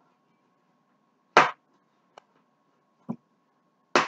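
A single sharp knock about a second and a half in, then two faint clicks, over a faint steady high-pitched hum.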